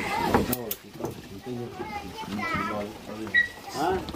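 Voices of people talking, with two sharp clicks or knocks about half a second in.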